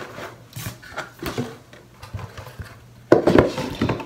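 Small gift items being put back into a cardboard box with light knocks and rustles, then a louder scraping rub from about three seconds in as the cardboard lid is pushed down onto the box.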